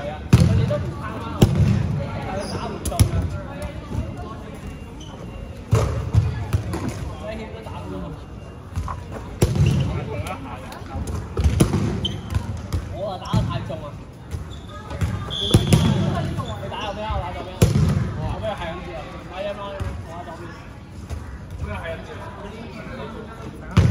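Dodgeballs being thrown, caught and bounced on a hard gym floor: irregular sharp thuds every second or two, over background chatter of many players.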